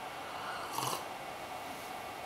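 A person sipping a drink from a mug: one short, faint sip about three quarters of a second in, against quiet room tone.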